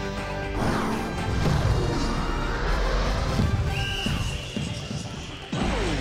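Sports-broadcast intro music with crashing hits and sweeping whoosh effects over a heavy low end. It cuts off suddenly about five and a half seconds in.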